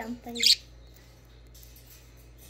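A budgerigar gives one brief, sharp chirp about half a second in, just after a word of speech, while it eats seed from a hand; after that only a faint steady hum.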